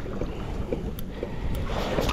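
Wind buffeting the microphone over choppy sea water washing against a kayak hull, a steady rushing noise with one faint click about a second in.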